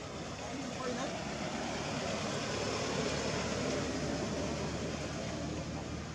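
Steady outdoor background noise, a hum like nearby road traffic, with faint indistinct voices.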